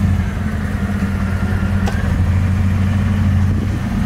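Mercedes-Benz W221 S-Class engine idling with a steady, even low hum.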